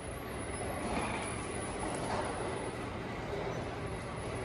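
Steady background rumble and hiss of a train station ticket hall, with no single event standing out.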